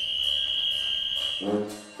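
A brass band playing: a high shrill note is held for about a second and a half, then a short low brass note comes in near the end.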